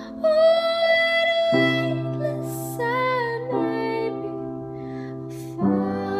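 A woman singing a slow ballad over sustained piano chords, holding long notes with vibrato. The chords change about every two seconds, and she takes audible breaths between phrases.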